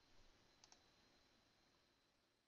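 Near silence, with two faint clicks about two-thirds of a second in.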